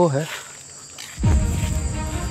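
Crickets chirring in a steady, high-pitched drone. About a second in, a loud low rumble with steady held tones comes in underneath.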